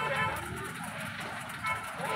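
A steady low rumble with people's voices over it.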